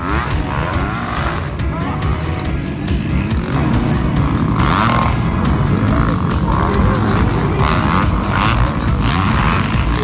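A pack of motocross dirt bikes racing, engines revving hard, with music playing over them. The engine noise gets louder about a third of the way in.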